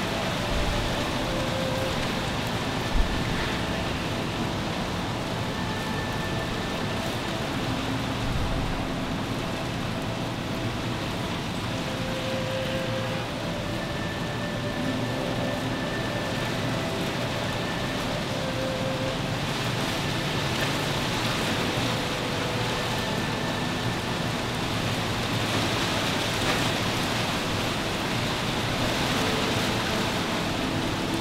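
Steady rushing background noise, with a single brief knock about three seconds in.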